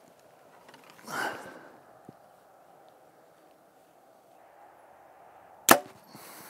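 Hoyt VTM 34 compound bow shot once near the end: a single sharp snap of the string as the arrow is released. A short, soft rush of noise comes about a second in.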